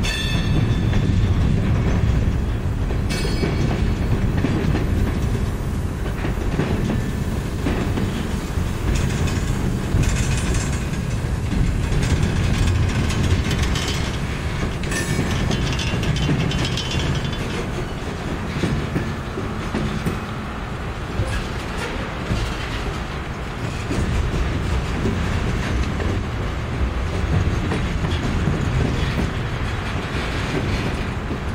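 Freight cars (covered hoppers and boxcars) rolling slowly past close by: a steady low rumble of steel wheels on rail with clacking over the joints. Brief high metallic squeals come from the wheels a few times.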